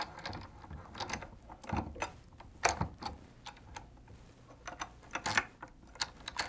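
A few irregular light clicks and knocks as a fishing reel is slid onto and seated in the metal reel clamp of an HD140 linewinder.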